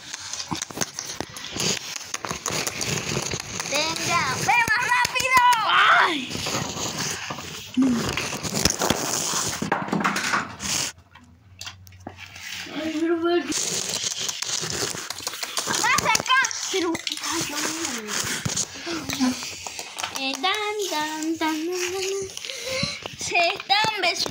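Children's voices talking indistinctly and making play noises, over rustling and clicking from plastic toy figures being handled. There is a short near-quiet pause about eleven seconds in.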